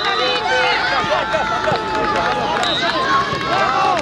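Many high-pitched voices shouting and calling over one another without pause, players and spectators at a children's football match.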